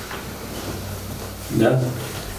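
Low room tone of a small office during a pause in the talk, then a short spoken 'Da?' near the end.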